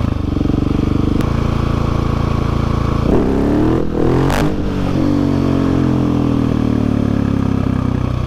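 Husqvarna 701 Supermoto's single-cylinder engine running on the move. About three seconds in it is revved hard, the pitch jumping up sharply, then it settles to a steady note that slowly falls. The exhaust is one the owner says doesn't sound right and needs a repack.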